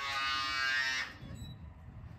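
Small electric pump motor, powered from a battery pack, giving a steady buzz that cuts off about a second in. It is purging brake fluid and trapped air out of the trailer's hydraulic brake lines during bleeding.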